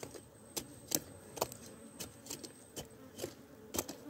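A metal hand blade digging and scraping into hard, stony soil: about eight sharp, unevenly spaced scraping strikes.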